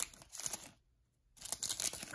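Plastic wrapper of a trading-card pack crinkling and rustling as it is torn open and pulled off the cards, broken by a short dead-silent gap about halfway through.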